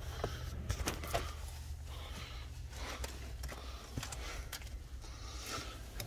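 Faint rustling and a few light clicks from a key fob being handled in a parked car's cabin, over a low steady hum.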